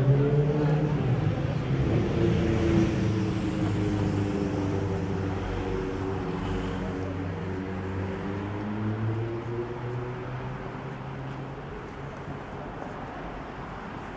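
Engine of a road vehicle in passing street traffic: a low, steady hum, loudest at first and fading gradually.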